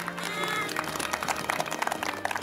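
Music playing over crowd noise, with a brief pitched cry about half a second in.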